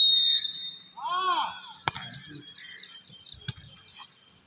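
A referee's whistle blows once, a steady high note lasting about a second. A player then shouts, and the volleyball is struck twice, sharp hits about a second and a half apart.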